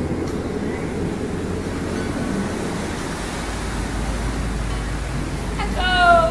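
Motorboat under way: steady low engine noise mixed with water rushing along the hull.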